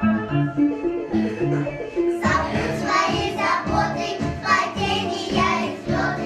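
A group of young girls singing a song together over an instrumental backing. The backing plays alone for about two seconds before the children's voices come in.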